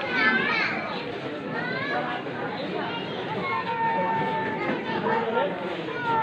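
Spectators chattering in a crowd, with children's voices close by, several voices overlapping.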